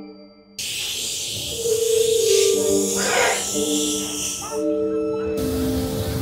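A fog machine blasting with a loud, sudden hiss about half a second in, over eerie music of held tones; the hiss drops out briefly near the end and starts again.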